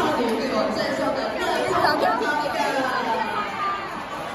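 Banquet guests, adults and children, talking over one another at their tables: a steady hubbub of overlapping voices in a large hall.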